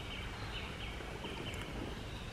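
Low, steady outdoor background of a small stream running over its bed, with a faint high thin note coming and going.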